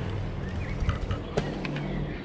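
Steady low hum of a vehicle engine on a nearby road, with a few light footstep clicks on a concrete floor about a second in.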